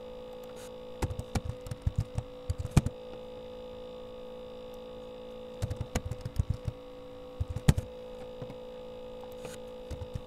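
Computer keyboard typing in short bursts of keystrokes, with a few sharper, louder clicks, over a steady electrical hum.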